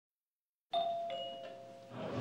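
Two-note ding-dong doorbell chime: a higher note comes in about three-quarters of a second in, then a lower note, both ringing and fading away.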